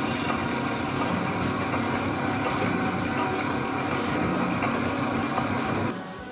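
Metal-working factory machinery running with a steady, dense mechanical clatter, in keeping with a milling machine cutting gears. It cuts off suddenly right at the end.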